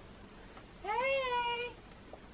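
A one-year-old toddler, dummy in his mouth, gives one short voiced call about a second in, rising in pitch and then held level for under a second, in answer to being asked to say 'Mummy'.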